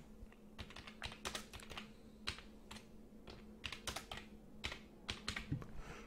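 Typing on a computer keyboard: a faint, irregular run of key clicks as a short name is typed out.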